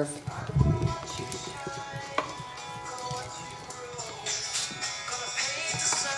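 A phone ringing with a musical ringtone: a melody of sustained tones announcing an incoming call. A low thump comes about half a second in.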